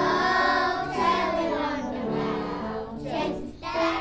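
A group of young children singing a Christmas carol together.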